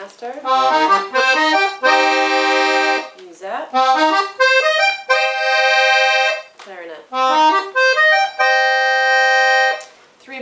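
Weltmeister Juwel piano accordion with a three-reed LMM treble, played on the treble keys: quick runs that each end in a held chord, three times, demonstrating its treble register settings. The first held chord sounds lower and fuller than the two brighter ones that follow.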